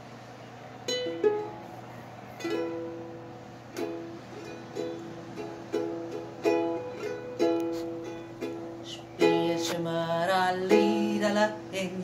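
Ukulele intro to an old Yiddish klezmer song: single chords strummed about once a second and left to ring, then strummed more busily. A woman's voice joins in singing near the end.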